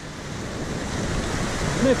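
Fast, shallow river water rushing over stones, a steady hiss that fades in and grows louder; a man's voice starts just before the end.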